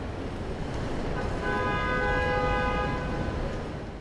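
City street traffic: a vehicle passes, its noise swelling and fading. In the middle a held, multi-tone horn-like sound lasts about two seconds.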